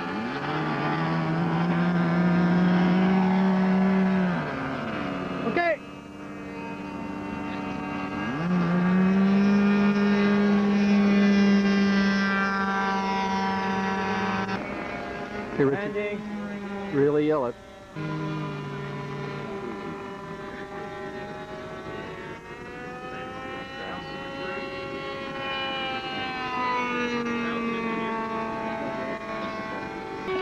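Radio-controlled model airplane engines running at high revs. The pitch swells and sags as a model opens up for takeoff and passes by. The sound jumps abruptly a few times between different engines.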